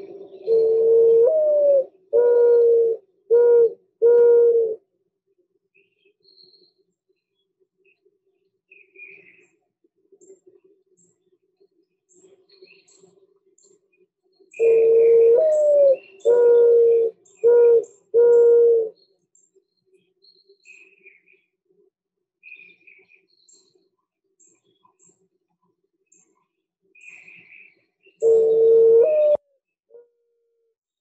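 Mourning dove song, the soft mournful coo: a drawn-out first coo that slides up and back down, then three shorter, even coos. The phrase sounds twice in full, and the opening coo of a third comes near the end. Faint chirps of other birds sound in the gaps.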